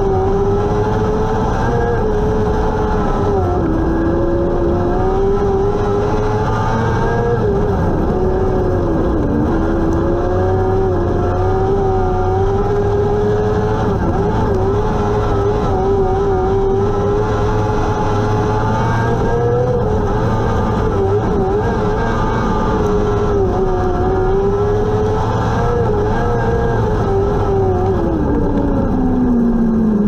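Restrictor-class dirt-track sprint car's engine heard from the cockpit, running flat out at high revs with its pitch dipping and rising through the corners. Near the end the revs fall steeply as the car slows.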